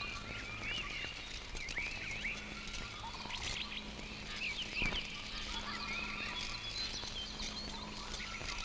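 Many birds chirping and calling, short rising-and-falling chirps overlapping throughout, over a faint steady hum, with one brief knock a little before five seconds in.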